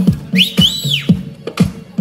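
Electronic dance music with a steady kick-drum beat of about two beats a second over a bass line. In the first second a high whistle rises, holds and falls away.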